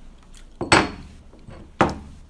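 Two sharp knocks on a wooden tabletop, about a second apart, from a shot glass or a hand hitting the table right after a shot is downed.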